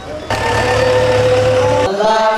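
A single long musical note held steady for about a second and a half over a low hum, cutting off abruptly near the end.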